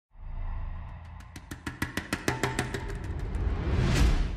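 Short music intro: a low bass with a quick, even run of drum hits, and a rising whoosh that builds to a peak near the end.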